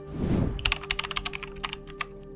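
A short whoosh, then a fast run of keyboard-typing clicks: a typing sound effect over faint background music.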